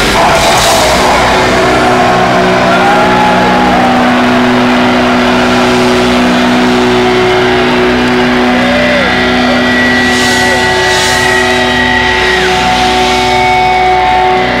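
Live heavy-metal band's final hit at the song's end, then amplified guitar and bass notes left ringing as a steady sustained drone over a cheering crowd, with a few whistles from the audience.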